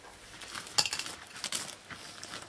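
Foil helium balloon crinkling and rustling as it is dragged and handled, with two sharp crackles, the first just under a second in and the second about half a second later.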